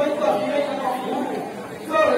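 Voices of several people talking over one another: chatter.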